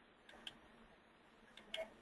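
Near silence broken by a few faint clicks of a computer being used to step through presentation slides: one about half a second in and a quick pair near the end.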